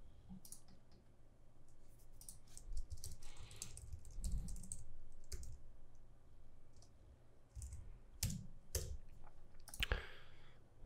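Computer keyboard typing: irregular runs of quick key clicks with short pauses between them.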